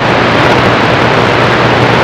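CB radio receiver's speaker giving loud, steady static hiss with a low hum underneath, the channel open on received band noise between transmissions. It starts suddenly at the outset.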